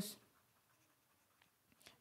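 Near silence, with the faint scratching of a stylus writing on a drawing tablet.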